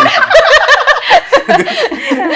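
Loud, hearty laughter from people in the room, in quick high-pitched peals that rise and fall.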